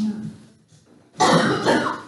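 A person coughing, a loud rough cough about a second in that lasts under a second, after a short breath or throat noise at the start.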